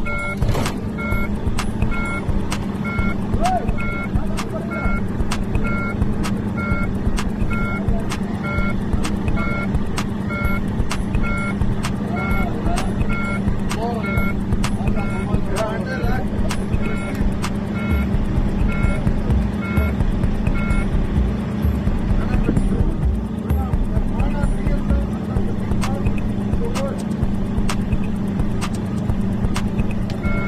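Volvo truck diesel engine idling with a steady hum, under a dashboard warning chime that beeps about three times every two seconds: the low-coolant 'Stop safely' alarm. The beeping stops about two-thirds of the way through and starts again near the end.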